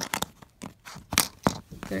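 Hard plastic LEGO zombie shark and a minifigure inside its rib cage clicking and knocking together as the shark is shaken by hand: a handful of sharp clicks, the loudest just over a second in.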